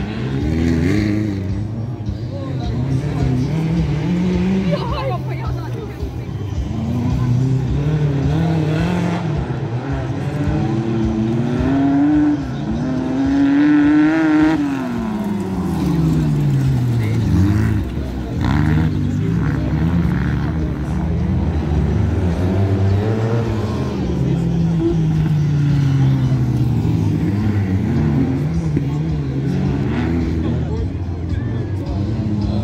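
Off-road racing buggy engines revving hard on a dirt track, the note climbing and dropping repeatedly through gear changes. The highest, loudest run comes just past the middle, then the pitch sweeps down as a buggy passes.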